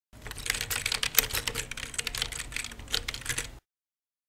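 Rapid typing on a keyboard: a dense run of key clicks that stops suddenly about three and a half seconds in.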